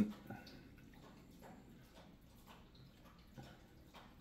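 Quiet room with a few faint, scattered soft clicks.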